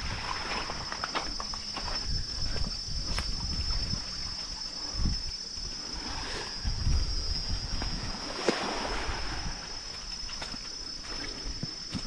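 Steady high-pitched drone of an insect chorus, with irregular low rumbling, soft thuds and a few clicks underneath.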